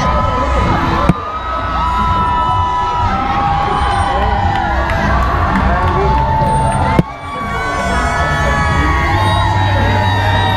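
Parade crowd cheering and whooping, many voices overlapping in long held calls over a steady low rumble. Two sharp knocks cut through, about a second in and again near seven seconds.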